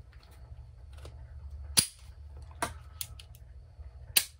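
Beretta Pico .380 pocket pistol being worked by hand: a sharp metallic click a little under two seconds in, then a few lighter clicks, from its slide and double-action-only trigger mechanism.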